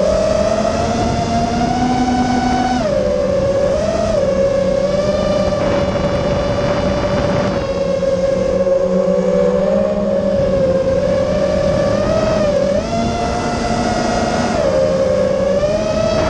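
FPV racing quadcopter's brushless motors (MCB Primo 2207, 2450 kV) spinning 6-inch tri-blade props: a steady high whine whose pitch dips and climbs several times as the throttle changes, with a drop about three seconds in and a climb near the end.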